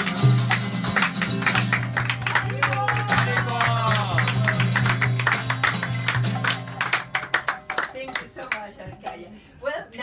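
Group chanting session with acoustic guitar strumming, hand clapping and voices singing, ending about seven to eight seconds in.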